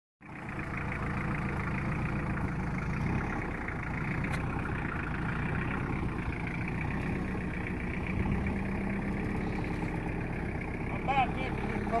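Tractor engine running steadily, with a woman's voice calling out near the end.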